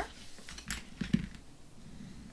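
Hands folding and pressing down scored white cardstock on a craft mat: faint paper handling with a few light taps about a second in.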